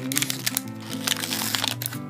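Packaging crinkling and clicking in quick, irregular crackles as a mini lip gloss duo is pulled from its box and plastic tray, over steady background music.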